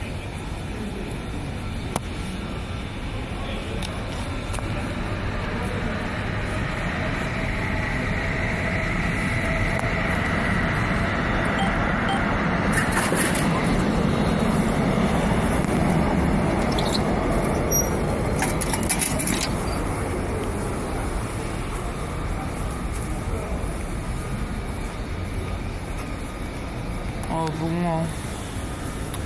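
An electric commuter train running through the station, swelling slowly to its loudest about halfway and then fading away, with a faint whine over the rumble. A single sharp knock comes about two seconds in.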